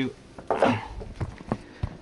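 A short breathy sound, then a few light clicks and a low knock in the second half: small handling noises with no clear source.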